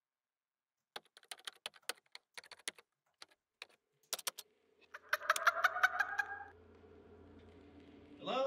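Typing on a laptop keyboard, a run of quick clicks. About five seconds in, a louder, high pulsing sound lasting about a second and a half breaks in over a low hum that keeps going afterwards.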